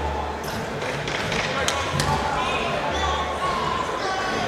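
Several voices talking and calling out over one another, with a few sharp knocks near the middle.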